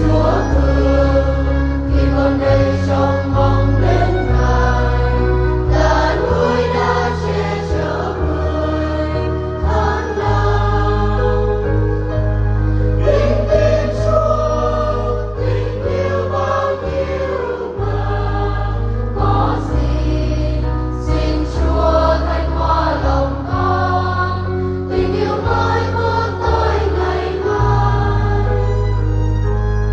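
A church choir singing a Vietnamese Catholic hymn, with instrumental accompaniment holding sustained low chords that change every couple of seconds.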